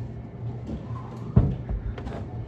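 Indoor room noise with a steady low hum and one dull thump about a second and a half in.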